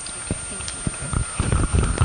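Handling noise from a handheld microphone being picked up and brought into position: a run of irregular dull knocks and thumps, sparse at first and coming closer together in the second second.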